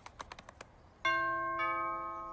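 A few light clicks, then a two-note doorbell chime: the first note about a second in, the second about half a second later, both ringing on.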